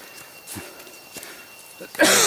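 Footsteps on dry leaf litter and twigs on a steep forest path: a few soft steps, well under a second apart.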